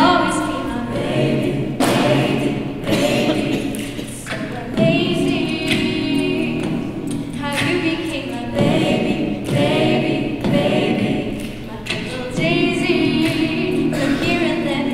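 Live a cappella ensemble singing in harmony: a female lead voice over sustained backing vocals. Vocal-percussion thumps mark the beat.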